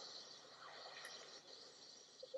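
Near silence: a faint, steady high hiss coming through a Skype call's audio.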